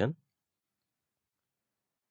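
Silence after a spoken word trails off at the very start.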